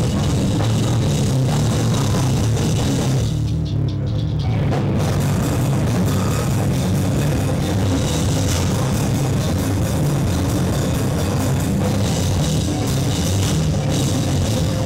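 Live heavy band playing loud and distorted: full drum kit with crashing cymbals under distorted guitar. About three seconds in, the cymbals and high end drop away for about a second before the band crashes back in.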